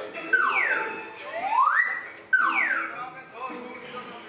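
Comedy slide-whistle-style sound effects: a gliding tone falls, then rises, then falls again. Background music and a man's speech run underneath.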